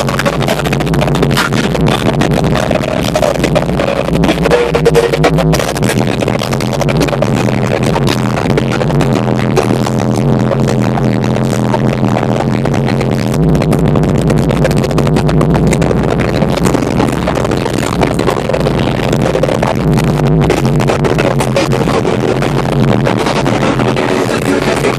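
Loud music played through a car's pro audio system of door-mounted midrange speakers and tweeters, with heavy bass.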